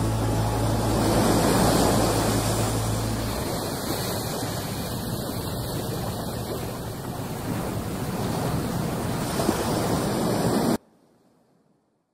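The close of a song on a pop-rock compilation: a held low note stops about three seconds in, leaving a steady rushing wash like surf that cuts off suddenly shortly before the end, after which there is near silence.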